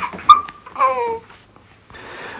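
A short high-pitched whine that falls in pitch, about a second in, after a brief high note.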